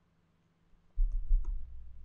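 Near silence, then about a second in a sudden low thud and rumble from the microphone being bumped or handled, with a couple of faint clicks.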